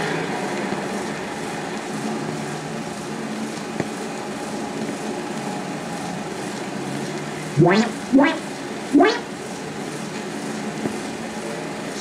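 Three quick rising whistle-like sweeps, cartoon sound effects, about half a second to a second apart past the middle, over a steady hiss and hum of an old film soundtrack.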